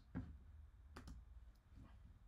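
A few faint computer mouse clicks over near-silent room tone, the sharpest about a second in.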